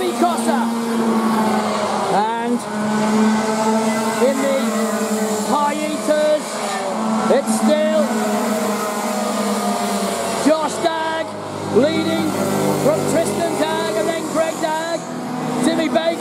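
Several two-stroke racing kart engines revving hard and easing off through the corners, their pitch sweeping up and down again and again as the karts pass.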